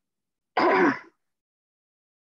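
A person clearing their throat once, a short burst of about half a second.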